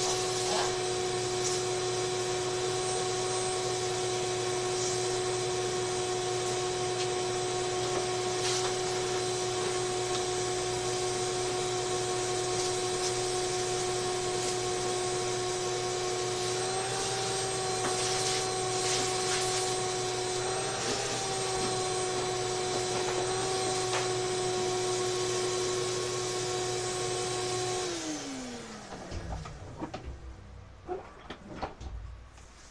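Vacuum cleaner running with a steady whine, its pitch rising slightly and wavering a few times in the middle as the nozzle is worked inside a clothes dryer cabinet. Near the end it is switched off and the whine falls away as the motor winds down, leaving a few light knocks.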